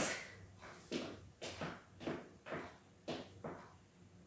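Boots stepping on a hard floor: about seven faint footsteps, unevenly spaced.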